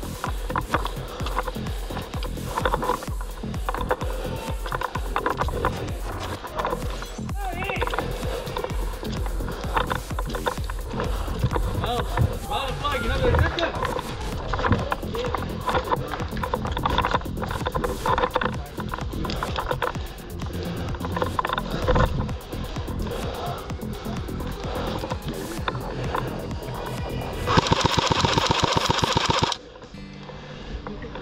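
Background music over the busy sounds of an airsoft game, with voices in the background and scattered clicks. Near the end comes a loud, rapid burst of evenly spaced shots lasting about two seconds, which fits an airsoft rifle on full auto, and it stops abruptly.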